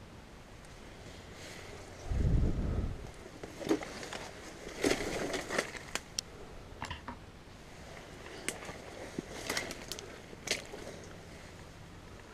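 Irregular crunching and crackling of dry leaves and twigs underfoot as someone walks through undergrowth, with a brief low rumble about two seconds in, the loudest sound here.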